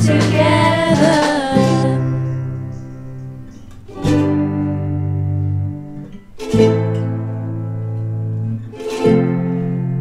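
Girls' voices sing the song's last line in the first two seconds. Then a school ukulele ensemble strums slow chords and lets each one ring, with a new strum about every two and a half seconds.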